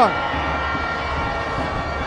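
Steady stadium crowd noise, with a few faint sustained tones held through it.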